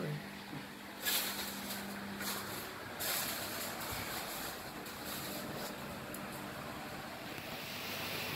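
Quiet room noise: a steady hiss with a faint hum that fades out after a couple of seconds, and brief swells of rustling about one and three seconds in.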